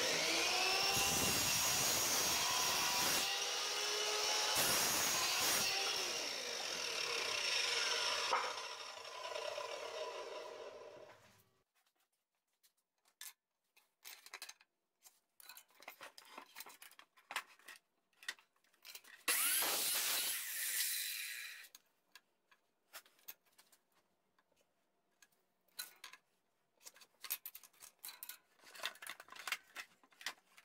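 A 10-inch compound slide miter saw starts and crosscuts a wooden board. Its motor whine winds down over several seconds after the cut. A second, shorter run comes about two-thirds of the way through, with scattered clicks and knocks of boards being handled.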